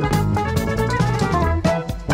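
Fretless Fender Jazz-style electric bass playing a jazz-fusion line of held low notes over a backing track with drum kit and keyboards.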